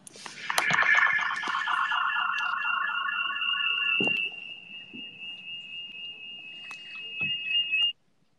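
A high, steady electronic tone with a fast pulsing tone beneath it, about four pulses a second, for the first few seconds. It drops back around the middle, swells again near the end, then cuts off suddenly.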